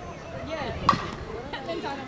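A softball bat hitting a slowpitch pitch: a single sharp crack about a second in.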